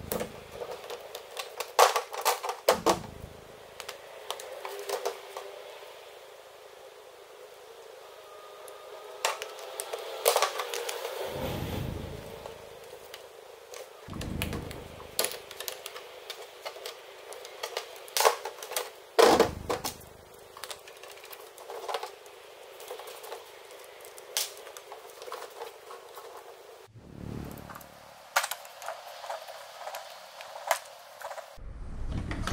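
Irregular clicks, taps and knocks from hands swapping the wheels on an RC car, with plastic wheels and parts set down on a table and a few louder thumps.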